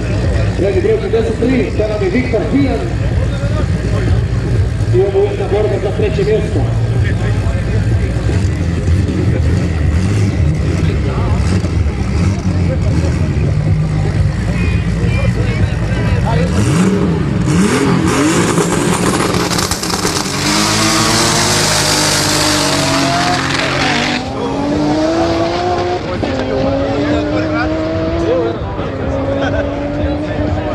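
Drag-race cars idling at the start line, then launching: a loud rushing noise for about four seconds, and an engine revving up through the gears, its pitch climbing and dropping back at each of three gear changes.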